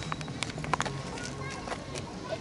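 Footsteps on asphalt: a few short, light clicking steps, with faint voices in the background.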